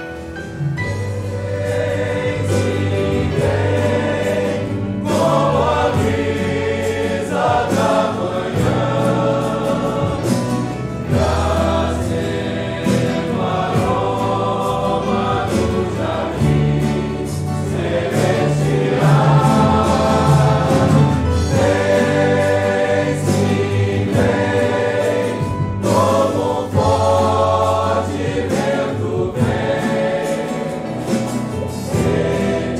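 Congregation singing a Portuguese hymn in unison over steady keyboard accompaniment.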